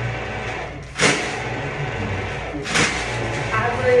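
Electric hand dryer running with a loud, steady rush and a low hum, surging sharply about a second in and again near three seconds as the air flow changes.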